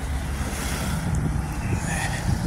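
Steady low rumble of city street traffic, with wind buffeting the microphone.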